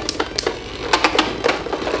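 Two Beyblade Burst tops spinning in a plastic stadium: a steady whirr with many sharp, irregular clicks as they clatter against each other and the stadium.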